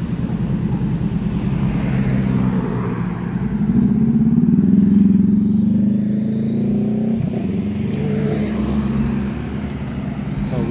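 Street traffic: motor vehicle engines running as cars, a motorcycle and vans drive past close by, getting loudest about five seconds in as one engine rises in pitch while accelerating.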